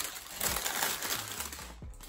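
Tissue paper in a shoe box rustling and crinkling as it is handled and pulled back, in irregular crackles that thin out near the end.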